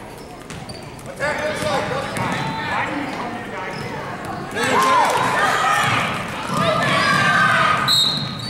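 A basketball bouncing on a gym's hardwood floor during play, under indistinct shouting from spectators and coaches that grows louder about halfway through.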